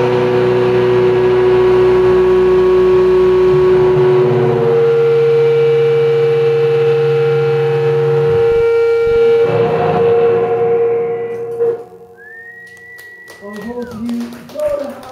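Electric guitars ring out through amplifiers in long held tones and feedback, with no drums, as a heavy rock song ends. The sound cuts off about twelve seconds in. A short high whistling tone rises and falls, followed by a few clicks.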